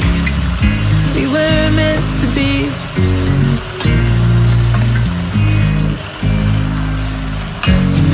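Background pop music: a love song with a steady low bass line.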